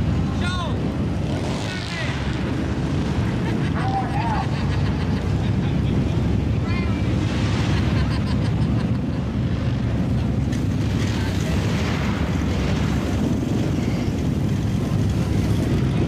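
Lifted mud-bog pickup's engine running loud and steady as the truck churns through a mud pit, with spectators shouting now and then over it.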